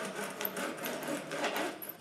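Screen spline roller's A-shaped wheel rolling steadily along the screen door frame's channel, pressing the screen mesh into it with a fine, rapid ticking.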